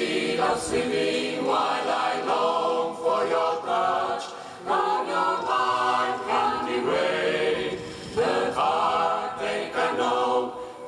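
Mixed choir of women's and men's voices singing a cappella in sustained chords, the phrases breaking briefly about four and a half and eight seconds in.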